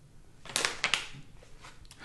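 Packaging rustling and crinkling as it is handled, loudest from about half a second to one second in, then fainter.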